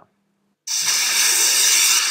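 A loud rushing hiss, a transition sound effect, that starts abruptly after a moment of silence and holds steady before beginning to fade near the end.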